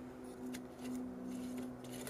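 Faint metallic clicks and scrapes as a brass oil-lamp burner is screwed onto a glass lamp font, over a steady low hum.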